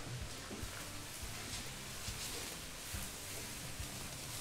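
Faint scraping and a few light knocks of a wooden spatula stirring fried rice with vegetables in a stainless steel kadhai.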